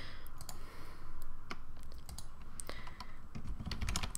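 A few irregular light clicks from a computer mouse and keyboard, over a faint low steady hum.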